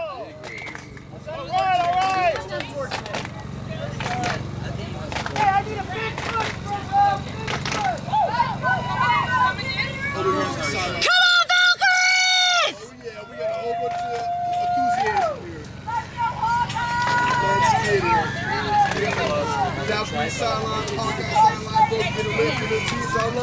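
Voices of people on and around a rugby pitch talking and calling out, with one loud high-pitched shout about eleven seconds in.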